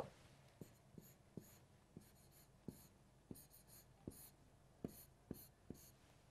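Faint taps and short scratchy strokes of a pen drawing arrows on a board: about ten light, unevenly spaced ticks with brief scraping strokes between them.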